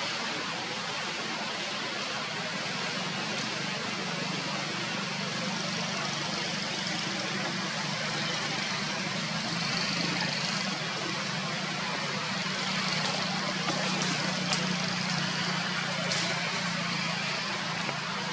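Steady outdoor background noise of distant road traffic, with a low hum running under it and a few faint clicks in the second half.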